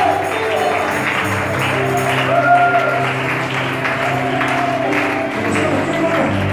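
Live church worship music with voices singing and hands clapping along.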